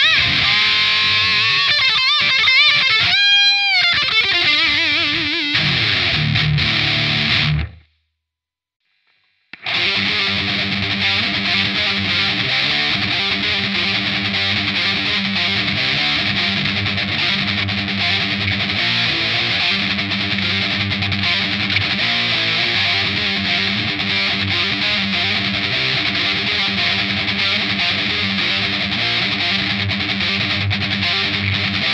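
Heavily distorted electric guitar, an Ibanez RGA121 with DiMarzio D-Activator X pickups played through an EMMA PisdiYAUwot high-gain metal distortion pedal into a Line 6 Spider Valve MKII amp. It plays a lead line with bent notes, stops about eight seconds in, and after about two seconds of silence a new dense, steady distorted riff starts and runs on.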